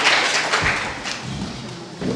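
Audience applause dying away, the clapping thinning out and fading over the two seconds, with a soft low thump just over half a second in.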